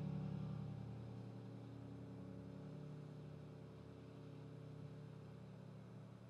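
A grand piano's low notes ringing on after the playing stops, slowly fading away.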